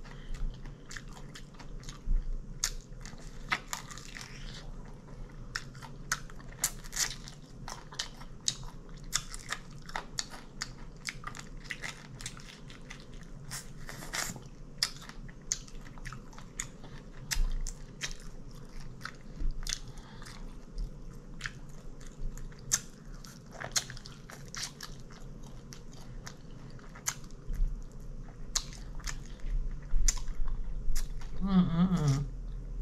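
A person biting and chewing fried chicken up close, the crisp breading crunching in many short, irregular clicks.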